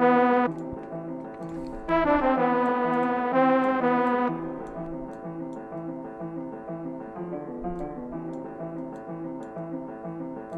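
A software keyboard lead with an electric-piano-like sound loops a short melody in repeated notes during beat production. It plays loud and bright, drops back briefly, and returns bright for about two seconds. From about four seconds in it goes on quieter and duller, its upper tones cut away.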